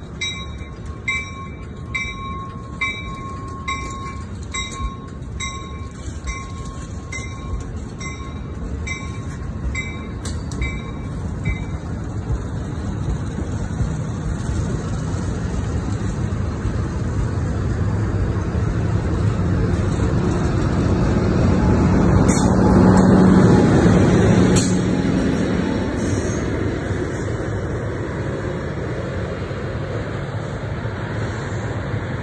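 Amtrak California bi-level passenger train with an SC-44 Charger diesel locomotive moving past on the rails: a steady rolling rumble that builds to its loudest about 23 seconds in, with a steady low engine tone, then eases off as the train draws away. For the first twelve seconds a ringing ding repeats about twice a second over it, with clicks.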